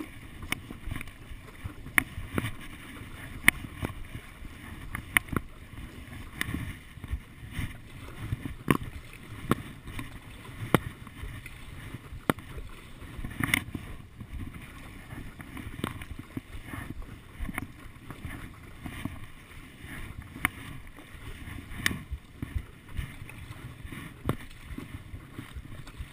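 Stand-up paddle strokes in calm sea water: low, uneven sloshing with a sharp click or knock every second or two as the paddle moves.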